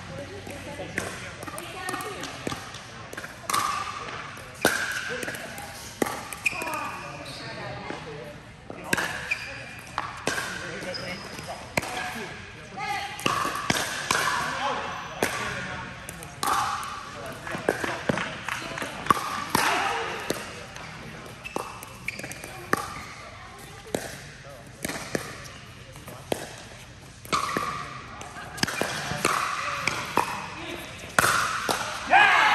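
Pickleball rally: paddles striking the hollow plastic ball and the ball bouncing on the court, a string of sharp pops at an irregular pace, with voices talking in between.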